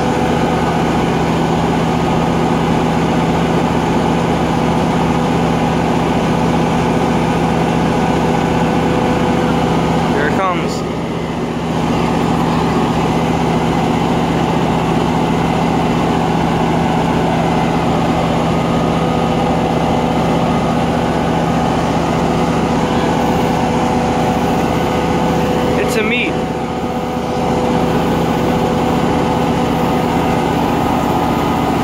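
Tri-Rail diesel locomotive idling at the platform close by: a steady, loud engine drone with a constant hum. It dips briefly twice, about a third of the way in and near the end.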